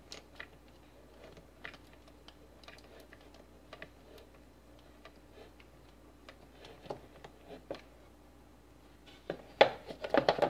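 Hot glue gun being worked, with scattered small clicks and taps from its trigger and from handling against the wooden soap mold. A few louder sharp knocks come near the end.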